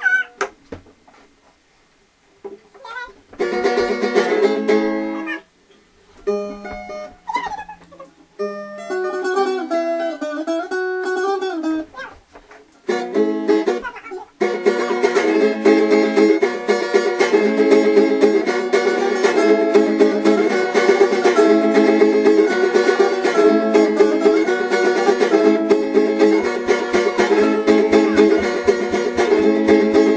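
An acoustic guitar and an electric guitar played together in a small room: a few short fragments that stop and start in the first half, then from about 14 seconds in a steady, repeating picked chord pattern.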